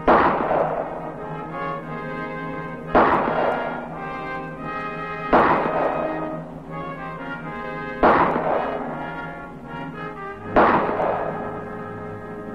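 A semi-automatic pistol fired one-handed in a slow, deliberate string of five shots, about two and a half seconds apart, each with a short echo. Background music plays underneath.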